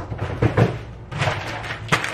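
Rummaging in a freezer drawer: short rustles and knocks as a plastic bag of frozen berries is handled and pulled out, with a sharp click at the start and another near the end.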